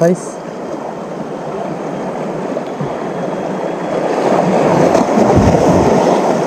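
Small sea waves washing and splashing against shoreline rocks, a steady rush that swells louder in the second half.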